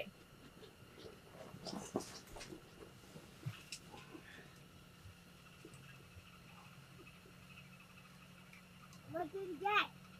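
Mostly quiet room tone with a faint steady hum, a few soft clicks and low murmurs, then a short spoken word near the end.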